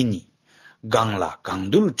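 A man speaking, a talk with a short pause of about half a second near the start.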